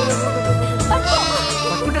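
Background film music with a pulsing bass, over which a young goat bleats about a second in.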